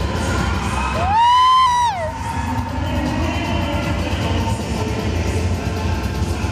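Latin dance music playing, with a crowd of dancers cheering and shouting over it. About a second in, a loud drawn-out call rises in pitch, holds, then falls away, lasting about a second.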